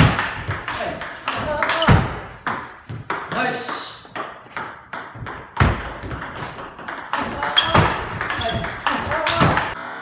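Table tennis rally: the celluloid-type ball clicking off rubber-faced paddles and bouncing on the table, several hits and bounces a second, in a fast attack-and-counter-hit exchange. The rally stops just before the end.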